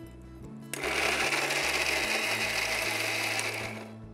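Electric mixer grinder running at speed, grinding a wet masala paste with its lid held down. It starts suddenly about a second in, runs steadily for about three seconds, then winds down just before the end.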